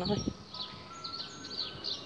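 Small birds chirping in the background, a scatter of short high chirps and quick little glides, over faint outdoor noise.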